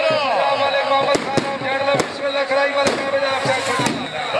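A man's voice calling out in long rising-and-falling phrases, with several sharp cracks, four of them between about one and three seconds in.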